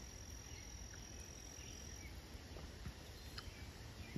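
Faint outdoor background with a steady, high-pitched insect trill that stops about halfway through.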